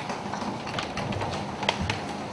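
Room noise in a meeting hall with scattered light taps and knocks, and two sharper clicks near the end.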